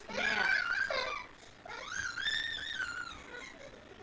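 A toddler vocalizing in a very high voice: a short cry-like burst, then one long, wavering high note about a second and a half long.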